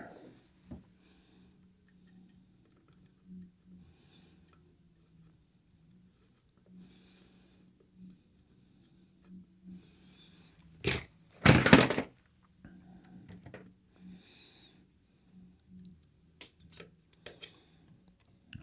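Small clicks and handling noise from soldering tools and a solder spool at a tube amp chassis, over a faint low hum, with two sharp clattering knocks about two-thirds of the way through. The old solder joint on the reverb switch connection is being reheated so that it flows again.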